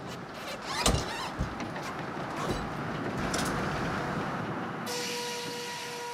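An old forklift's engine running as it drives, with a single clunk about a second in. Near the end it cuts to a steady hum of sawmill machinery.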